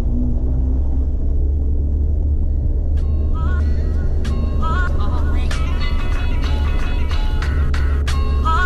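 A vehicle driving along a gravel track, with a loud, steady low rumble. Background music with a regular beat and bright melodic notes comes in about three seconds in.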